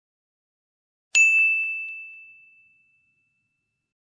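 A single bright, bell-like ding from an intro sound effect, struck about a second in and ringing out as it fades over a second or two.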